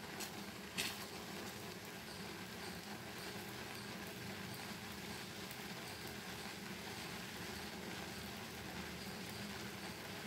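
Low, steady hiss of a thick cornflour custard simmering and bubbling in a pan over a high gas flame, with a light knock of a wooden spoon against the pan about a second in.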